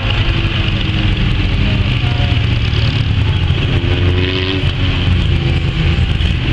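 Engines of speedway production saloon cars running around a dirt oval. The engine note rises and falls as the cars go round, and one car comes close past near the end.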